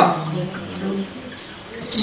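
Cricket chirping: a steady, high, pulsing trill in the lull between spoken lines, with faint low background noise.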